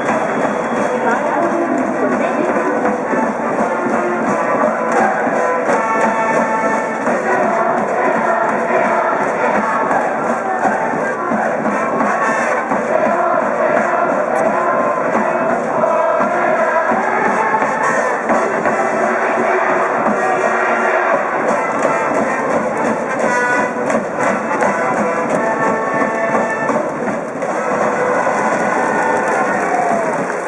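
School brass band in the stands playing a baseball cheer song without a break, with a large cheering section's voices chanting along.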